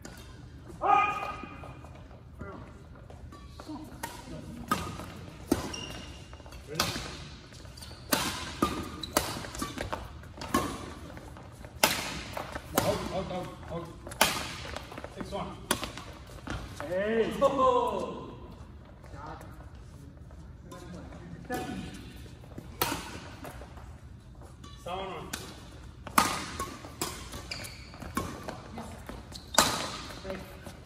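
Badminton rackets striking a shuttlecock during a doubles rally: sharp hits at irregular intervals throughout, with players' voices calling out now and then.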